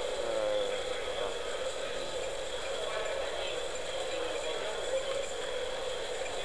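Indistinct background chatter of several people over a steady electrical hum.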